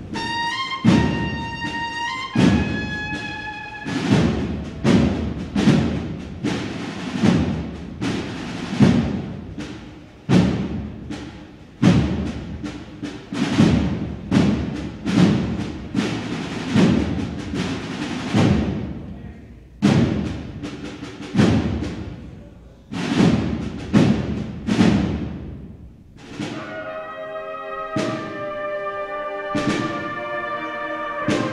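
A cornet and drum band plays a processional march. A short cornet call opens it, then drum strikes ring out one or two at a time for about twenty seconds. Near the end the full cornet section comes in with sustained chords.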